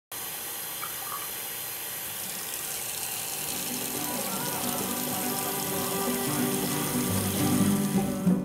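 Steady rush of water running from a sink tap. Music fades in under it from about three and a half seconds and grows louder toward the end.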